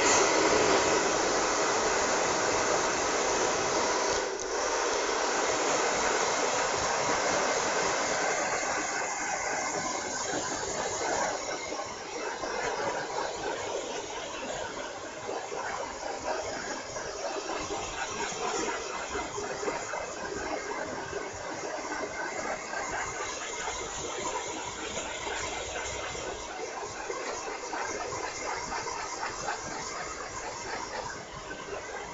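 Hand-held hair dryer switched on and blowing freshly cut short hair, a steady hiss with a brief dip about four seconds in and a slightly lower, wavering level in the second half.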